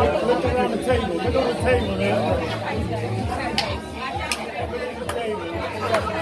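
Guests chattering over background music at a party, with a few sharp clicks a little past halfway.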